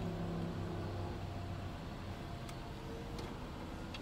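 Steady, low car-cabin rumble from the engine and running gear, with a faint low hum that fades away in the first second and a half and two faint ticks in the middle.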